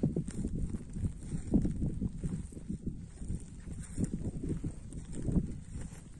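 Uneven low rumbling and thumping on a phone's microphone, the kind made by wind buffeting or handling.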